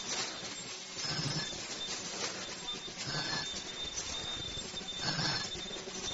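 Automatic KN95 mask-making machine running, with a noisy mechanical burst repeating about every two seconds over a steady high whine.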